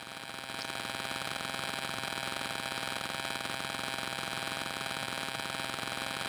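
A steady electrical buzz with hiss, swelling slightly in the first half second and then holding level.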